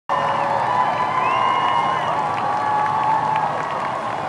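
A large crowd cheering and applauding, steady throughout, with long held high calls over the noise.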